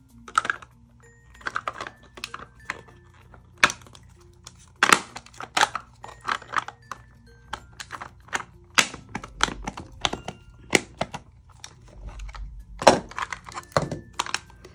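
Hollow plastic nesting-figure shells clicking and knocking as they are handled, pulled apart and pressed together, in irregular taps with a sharper snap near the end. The halves are being pushed to close over a figure nested inside, which doesn't fit perfectly.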